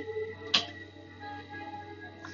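A playing card thrown by hand, with one sharp click about half a second in, over faint background music.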